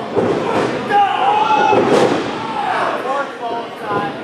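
Wrestling crowd shouting and yelling, with one sharp thud about halfway through as wrestlers hit the ring canvas.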